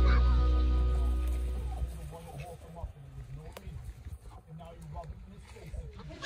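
Background music fading out over the first two seconds, then white domestic ducks quacking softly in short scattered calls.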